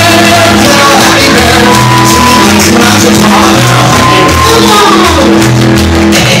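Loud live band music, piano and drums, with a repeating bass line, and voices shouting and singing over it.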